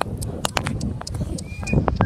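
Footsteps on pavement, an irregular run of sharp taps, as the person filming walks, over a steady low rumble. A short high tone sounds near the end.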